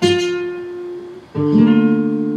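Flamenco guitar played on its own: a chord struck at the start rings out and fades, then a fuller chord is struck about a second and a half in and sustains.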